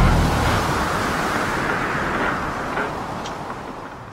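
A rushing storm-at-sea sound effect, like wind and surging water, that fades steadily toward silence.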